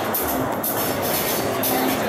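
Loud electronic music with a steady beat, about two beats a second, with a dense, continuous backing.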